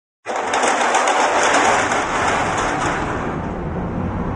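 Metal roller shutter rattling as it rolls: a dense clattering rattle that starts suddenly and dies down near the end.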